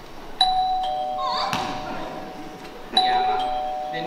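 Two-note doorbell chime, a higher note falling to a lower one (ding-dong), rung twice about two and a half seconds apart.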